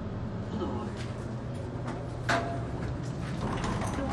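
Otis traction elevator arriving at the floor and its car doors sliding open, over a steady low hum from the elevator, with one sharp clunk a little over two seconds in.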